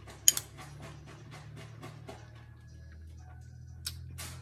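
A metal spoon clinks once against a ceramic bowl just after the start, followed by quick, regular wet clicks of chewing a soft mouthful of ground beef with cheese and sour cream, about five a second, fading out about halfway. A steady low hum runs underneath.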